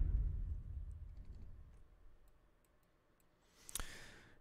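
The tail of drum and percussion playback, run through a FET-style compressor plugin, dying away over about two and a half seconds. Then come a few faint clicks and one sharper click near the end, from a computer mouse.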